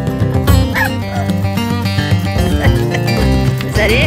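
Background music, and over it a dog yipping briefly about a second in and again near the end while two dogs play-fight.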